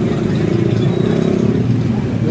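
A motor vehicle engine running close by, a loud steady drone, with general street noise.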